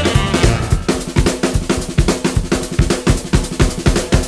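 Music with a drum kit playing a steady beat on bass drum and snare, about four hits a second, with a held low note underneath. A falling melodic line fades out in the first half-second.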